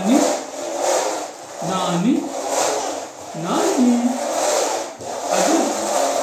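A voice making four rising 'vroom' car-engine noises for a toy push car, about one every second and a half, over a steady noisy rumble.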